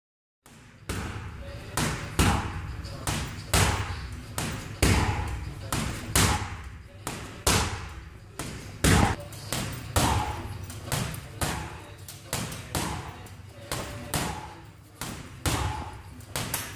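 Boxing gloves punching a heavy bag, a string of sharp thuds at an uneven pace of about one to two a second, each followed by a short room echo.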